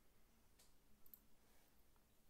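Near silence with two faint clicks of a computer mouse, about half a second apart.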